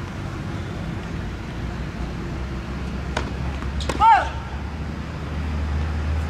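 Steady low traffic rumble around an outdoor tennis court, with two sharp knocks of a tennis ball about three seconds in. Just after them comes a short high call that rises and falls, the loudest sound.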